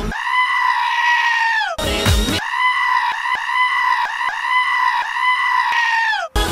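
A goat screaming in a long, steady, human-like yell that falls away at the end. There are two screams: a short one, a brief burst of a pop song about two seconds in, then a second scream of about four seconds with a few faint clicks running through it.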